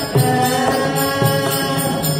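Tamil devotional bhajan: a male singer with harmonium and mridangam accompaniment. Held harmonium notes run under sharp drum strokes that keep a steady beat.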